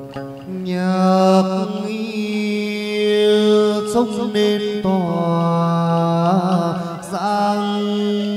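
Chầu văn ritual music: a singer draws out long, wavering held notes over a plucked-string and low steady accompaniment.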